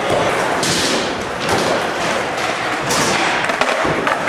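Skateboard wheels rolling over a hard floor, with several sudden board thuds and clacks.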